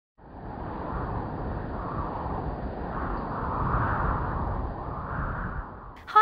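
Rushing wind with a deep rumble, swelling and easing in slow waves. It fades in at the start and dies away just before the end.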